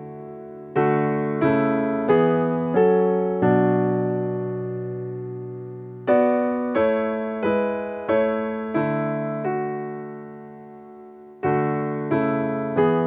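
Sampled Ravenscroft 275 concert grand piano (VI Labs virtual instrument) playing a slow passage of chords. Each chord is struck about two-thirds of a second after the last and left to ring and decay, with two chords held longer, one a few seconds in and one toward the end.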